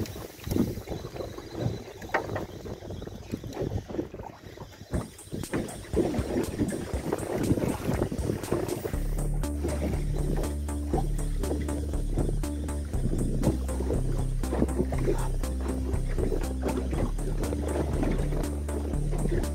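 Wind on the microphone and choppy lake water lapping around a small fishing boat, then background music with a steady beat and bass line comes in about halfway through.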